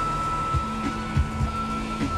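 Background music: sustained electronic tones over short low bass thumps.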